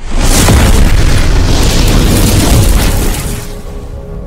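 Cinematic boom sound effect from an animated logo intro: a sudden loud impact followed by a noisy rush that holds for about three seconds, then dies away as sustained music tones come in near the end.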